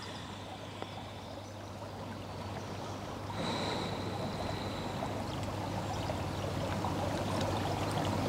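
Stream water running steadily, growing slightly louder about three seconds in, with a faint high thin tone coming in over it.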